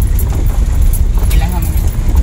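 Vehicle driving slowly over an unpaved gravel road: a loud, steady low rumble of road and engine noise.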